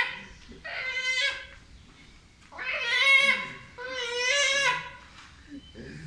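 A man imitating a goat's bleat with his voice: three long, wavering bleats.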